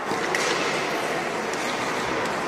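Ice rink ambience: a steady, echoing noise of skates on the ice and players' voices, with a single sharp knock about a third of a second in.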